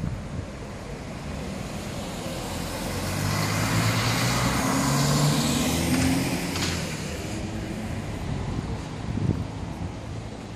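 A motor vehicle driving past, its engine note and tyre noise building over a few seconds, loudest about halfway through, then fading away.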